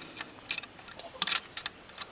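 A handful of short, sharp clicks and crackles, spaced irregularly: one about half a second in, a quick cluster a little past the middle, and two more near the end.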